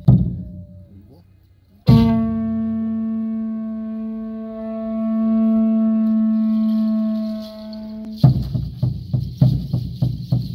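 A conch-shell trumpet blown in one long steady note of about six seconds, starting about two seconds in, after a few fading drum thumps. Near the end a rattle is shaken in a quick beat, about two to three strokes a second, with thuds under it.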